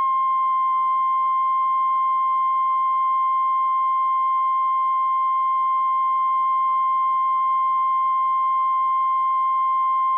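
Steady line-up test tone accompanying colour bars at the head of a video transfer: one unbroken, constant pitch at an even level.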